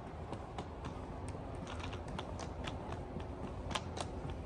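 Footsteps on a hard floor, a few sharp clicks a second in an irregular rhythm, the loudest just before the end, over a steady low rumble.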